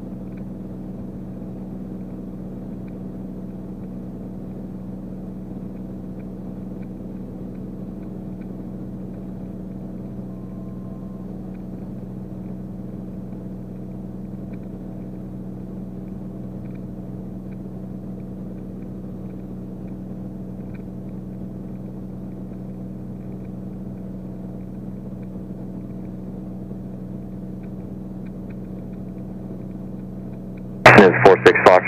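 Beechcraft Bonanza's six-cylinder piston engine and propeller droning steadily, heard inside the cockpit in level, unchanging cruise power.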